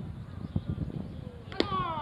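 A baseball bat hitting a pitched ball: one sharp crack about one and a half seconds in. Several voices shout right after it, their pitch falling.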